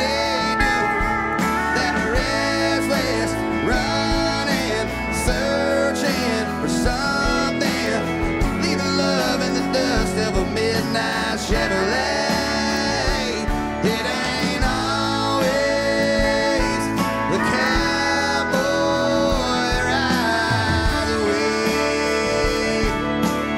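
A country song plays, with guitar, bass and drums at a steady level.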